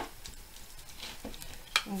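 A fork stirring a wet shredded-cabbage batter in a glass bowl, with a sharp clink of metal on glass at the start and a few softer taps and scrapes after it.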